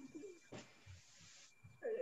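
Faint, low voice-like sounds heard over a video-call line, with a short hiss about half a second in and a louder pitched sound near the end.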